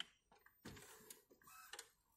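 A faint button-press click on an Epson WorkForce Pro WF-C5210 printer's control panel, then faint mechanical ticking and clicking from the printer as it powers off.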